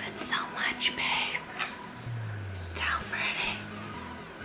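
A woman whispering under her breath in two short stretches, with a brief low falling hum about halfway through.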